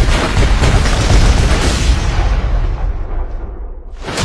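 A heavy explosion with a deep rumbling tail that dies away over about three seconds, the high end fading first. It is a film sound effect following an order to fire two cannon rounds.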